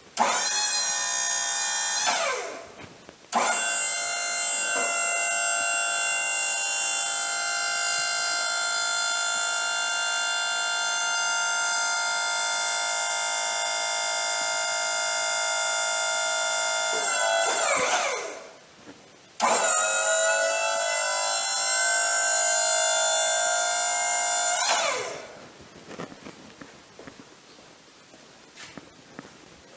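Wood-Mizer LT40 sawmill's hydraulic pump motor running in three runs of about 2, 14 and 6 seconds, as the loading arms are worked. Each run starts with a rising whine as the pump spins up and ends with a falling whine as it winds down.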